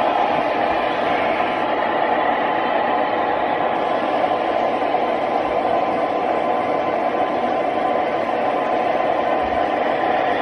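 Steady mechanical running noise with a faint hum from O gauge model trains on the layout, even and unbroken throughout.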